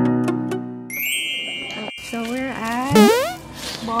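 Cartoon-style editing sound effects: plucked background music stops about a second in, then a bright sustained ding chimes, followed by bending pitched tones and a steep rising boing-like glide near the three-second mark.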